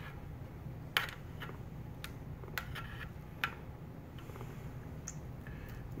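Metal spoon spreading sauce over cauliflower crusts on a metal baking sheet, giving about five light clicks and taps against the pan, the sharpest about a second in, over a steady low hum.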